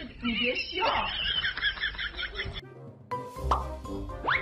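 A high voice with a fast, repeated warble, cut off suddenly about two and a half seconds in, then background music with a steady beat starting just after three seconds.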